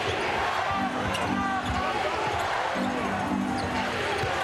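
A basketball being dribbled on the hardwood court over the steady noise of an arena crowd, with a few short held low tones mixed in.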